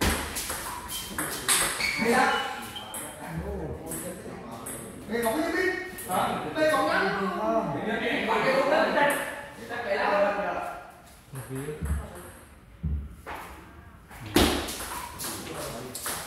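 Table tennis balls being struck in a doubles rally: quick sharp clicks of the celluloid ball off rubber paddles and the table, in a rally near the start and another starting near the end. People talk between the rallies in a roofed hall.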